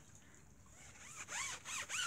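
Tire dressing being rubbed by hand onto a car tire's rubber sidewall. After about a second of near quiet, it gives a few short squeaks that each rise and fall in pitch.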